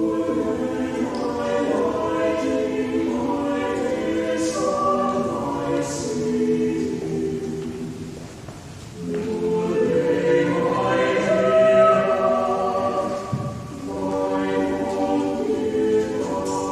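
Church choir singing in sustained, many-voiced phrases, with a short pause between phrases about eight and a half seconds in and a brief break near fourteen seconds.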